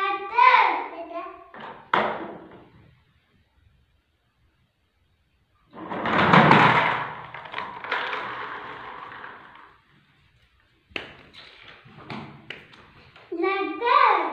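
Young children's voices near the start and again near the end. In the middle comes a loud rough rushing clatter that starts suddenly and fades over about four seconds.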